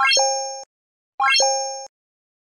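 Two identical short chime sound effects about a second apart, each a quick upward run of notes ending in a held ding that fades and then cuts off: the button-click sounds of an animated like, subscribe and notification-bell end screen.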